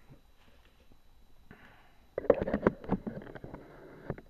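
Handling noise close to the microphone: a quick, loud run of knocks, clicks and rustles lasting about a second and a half, starting about two seconds in after a near-quiet start.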